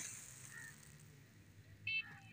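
Quiet outdoor background with no distinct sound, then a brief high-pitched call just before the end.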